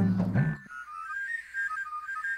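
A high, whistle-like melody of short, wavering notes that step up and down, beginning about half a second in once a voice stops.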